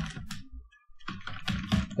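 Typing on a computer keyboard: a few keystrokes, then a quicker run of keys in the second half.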